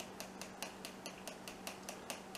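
A plastic spice shaker with a red cap shaken in quick, even strokes, sprinkling a dry seasoning mix. Its faint clicks come at about six a second.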